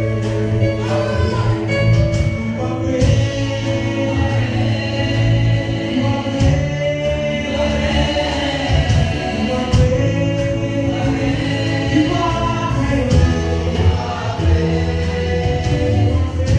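Gospel worship song sung by a group of singers, with keyboard accompaniment over a steady bass.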